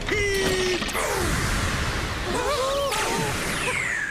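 Cartoon sound effects of shooting stars streaking past: a dense whooshing rush, ending in a long falling whistle. A short held laugh comes at the very start, and a few brief gliding cartoon voice sounds come in the middle.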